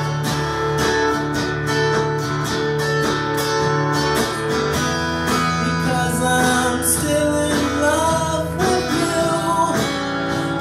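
Acoustic guitar strummed in a steady rhythm of chords; about halfway through, a man's singing voice comes in over the guitar.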